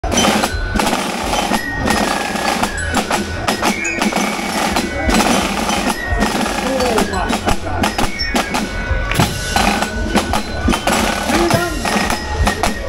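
A drum and fife corps playing a march, with marching snare drums prominent, over a loud, shouting crowd.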